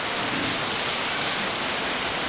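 Steady, even hiss filling a pause in speech, with no other event in it.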